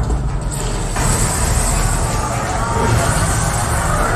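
Film soundtrack played back through home-theatre amplifier and speakers: voices over a heavy, steady bass rumble.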